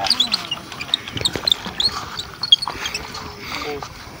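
Small birds chirping in many short, high calls, with faint, indistinct voices in the background.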